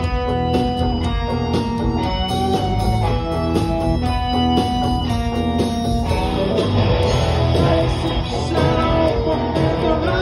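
Live rock band playing loud through a hall PA: distorted electric guitars holding chords over drums and bass.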